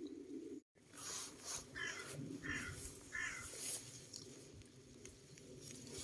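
Faint outdoor background with three short, evenly spaced calls from a distant bird, about two-thirds of a second apart.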